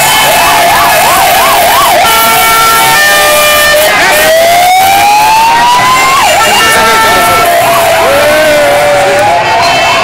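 Sirens and horns of a military vehicle convoy driving past, over loud crowd noise. A fast yelping tone comes near the start and a long rising wail in the middle, with short steady horn blasts twice.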